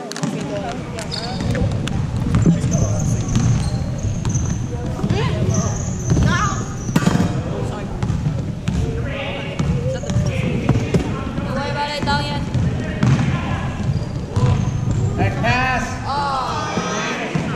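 Basketball being dribbled on a hardwood gym floor, with high sneaker squeaks and voices from players and spectators, all echoing in a large gym.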